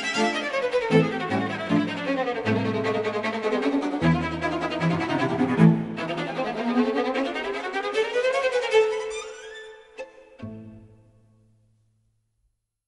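Background string music: a violin plays quick rising and falling runs over low bowed notes. The music thins out after about nine seconds and ends on one last low note that dies away.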